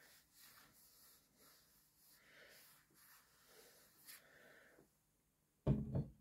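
Quiet, irregular handling and rustling noises with a single sharp click about four seconds in. Near the end comes a brief wordless vocal sound from a person.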